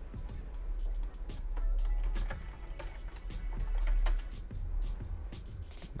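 Computer keyboard being typed on in short runs of keystrokes, over quiet background music and a steady low hum.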